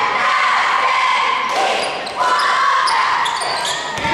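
Youth basketball game in an echoing gymnasium: players and spectators calling out over one another while the ball is passed and dribbled on the court.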